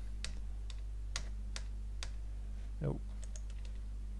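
Computer keyboard keys tapped in a few scattered, irregular clicks, with a quick cluster of light taps near the end, over a steady low hum.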